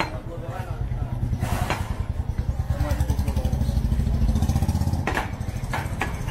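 An engine running steadily with a low throbbing that grows louder through the middle and eases off near the end. Several sharp chops of a heavy butcher's cleaver striking meat on a wooden chopping block cut through it, two about a second and a half in and two more near the end.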